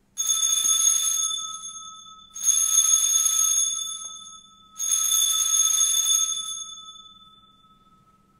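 Altar bells rung three times, each ring lasting about two seconds and fading, the last dying away near the end. They mark the elevation of the consecrated host after the words of consecration.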